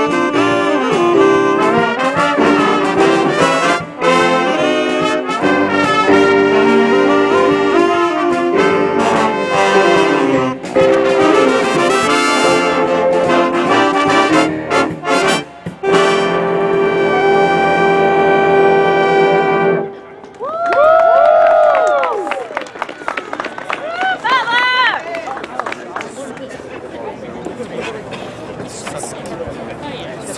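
Jazz band with trumpets, trombones and saxophones playing a tune that ends on a long held chord, cut off sharply about twenty seconds in. The audience then whoops and cheers, followed by quieter applause.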